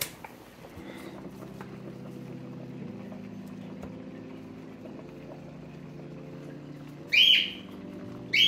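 A pet bird's loud squawk, once, about seven seconds in, over a steady low hum of tones that shift in pitch every couple of seconds.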